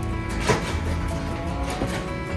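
Background music with held, steady notes, and a single sharp knock about half a second in.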